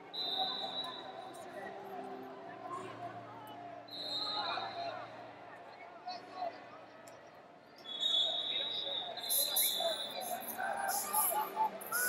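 Referee whistles blowing across a wrestling arena, several steady shrill blasts of about a second each, over a murmur of voices. Near the end, wrestling shoes squeak and scuff sharply on the mat as the wrestlers tie up.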